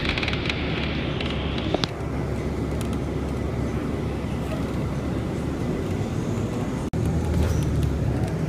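A Siemens-built light rail train (METRO Blue Line) moving away with a steady low rumble. A higher hiss stops with a click about two seconds in. The sound cuts off abruptly near the end and is replaced by a louder rumble.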